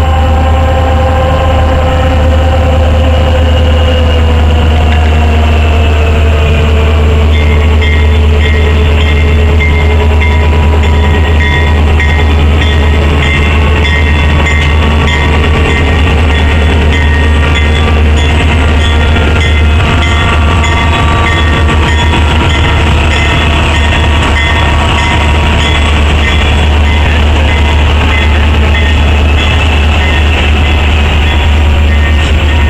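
A freight train hauling loaded ballast hopper cars approaches and rolls through a grade crossing. Its diesel locomotive passes about halfway through, then the cars follow. Under it all is a steady low rumble, with tones that fall in pitch a few seconds in.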